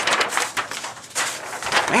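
Paper rustling and crinkling as paper target sheets are handled, a dense crackle for about a second before a voice comes in near the end.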